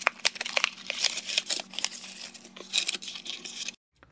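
Small cardboard box being opened by hand, with the packaging rustling and crinkling in quick, irregular clicks and scrapes. It stops abruptly near the end.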